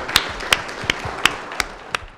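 Audience applauding, with single sharp claps standing out about three times a second. The applause tapers slightly toward the end.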